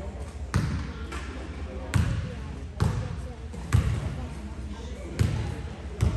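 A basketball bouncing on a hardwood gym floor five times, spaced roughly one to one and a half seconds apart, each bounce echoing in the large gym, as the ball is bounced at the free-throw line before a shot. A murmur of voices runs underneath.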